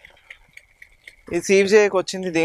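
A brief quiet pause with only faint light ticks, then a person starts talking about two-thirds of the way in.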